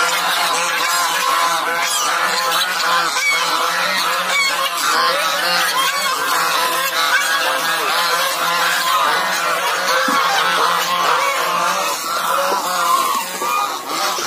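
A flock of white domestic geese honking, many calls overlapping without a break.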